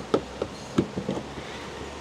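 A handful of short clicks and knocks as a DC fast-charging connector is pushed back into a VinFast VF3's charging port, over a faint steady low hum.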